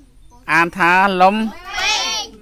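Young children's voices chanting a singsong lesson response in chorus, starting about half a second in and ending on a drawn-out high note near the end.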